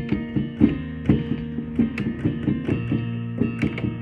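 Keyboard played by ear: a steady run of melody notes, several a second, over held lower chord notes.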